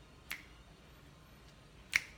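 Two sharp finger snaps about a second and a half apart.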